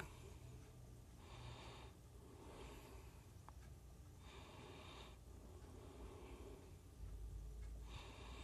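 Near silence: room tone with a low steady hum and a few faint breaths.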